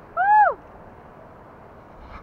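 A person's short, high-pitched 'woo!' whoop, rising then falling in pitch and lasting about half a second, near the start, followed by a steady faint hiss.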